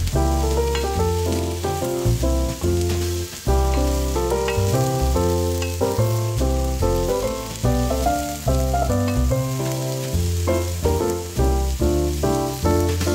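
Halved Brussels sprouts sizzling as they fry in butter in a pan, a steady high hiss. Background music plays over it with a melody and bass line changing note every fraction of a second, louder than the sizzle.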